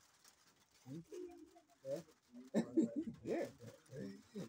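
Men's low voices murmuring and chuckling in short broken fragments, starting about a second in after a moment of quiet.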